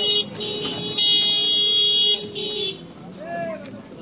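A loud, high-pitched, even buzzing in several bursts of up to about a second each, with a steady lower tone beneath, stopping about two and a half seconds in.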